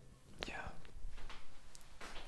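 A person whispering softly, breathy and without clear voiced speech.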